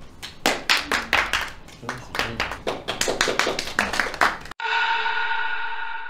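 A small group clapping in short, uneven applause. About four and a half seconds in, the clapping cuts off abruptly and a bell-like chime sound effect rings out, a steady tone slowly fading away.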